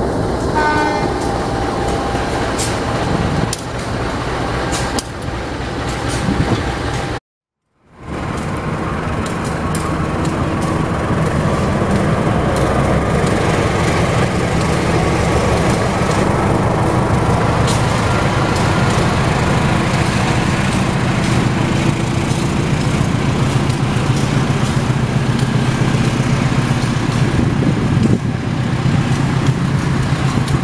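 Diesel-electric locomotives running at close range: a steady drone with low, even engine tones. A short falling tone sounds about a second in, and the sound drops out for a moment at about a quarter of the way through.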